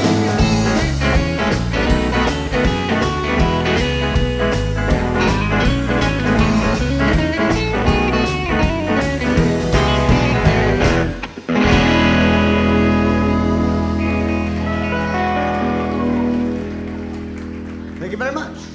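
Country band playing the instrumental end of a song live, with electric guitars, bass and drums on a steady beat. About eleven seconds in the band breaks off, then strikes a final chord that is held and slowly fades out.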